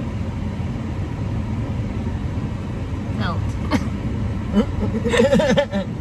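Steady low rumble of a car heard from inside its cabin, with a woman laughing near the end.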